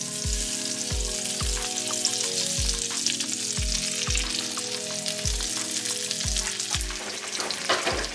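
Raw sausage patties sizzling in hot oil in a nonstick frying pan, a steady crackling hiss. Background music with a steady beat plays underneath.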